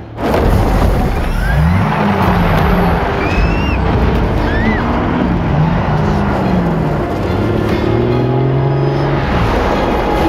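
Film action soundtrack: dramatic score over the loud, continuous rumble of a heavy truck's engine and road noise, with a few short high squeals. It begins with a sudden loud hit.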